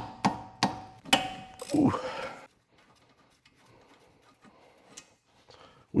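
A ratchet with a 14 mm socket clicking on a brake caliper bolt, sharp metallic clicks about three a second, ending in a longer ringing metal clank about a second in.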